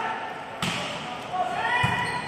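Volleyball being hit during a rally: a sharp smack of the ball about half a second in and a duller thud near the end, with voices around the court.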